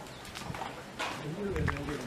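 People's voices talking, starting about a second in, after a couple of sharp clicks.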